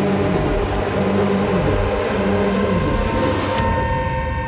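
Loud rumbling drone from the film's soundtrack, a dense noise with several held tones that shift slowly in pitch. Shortly before the end it changes abruptly: the hiss drops away and a steady high tone carries on.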